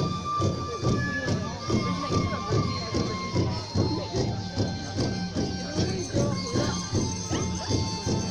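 Live Bodo folk music for the Bagurumba dance: a kham drum beating a quick, even rhythm, a sifung bamboo flute holding long notes above it, and jotha cymbals jingling.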